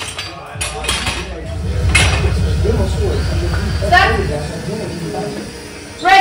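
Loaded barbell and plates clinking on a bench press as the bar is unracked and handled, with a few sharp metallic clinks among voices calling out. A low hum runs under the first four seconds or so.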